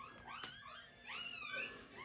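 Newborn golden retriever puppies crying: several faint, high-pitched calls that rise and fall and overlap one another.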